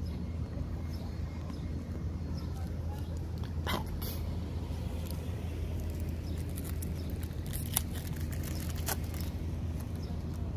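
A few sharp crinkles of a foil trading-card pack being torn open, about four seconds in and twice more near the end, over a steady low hum.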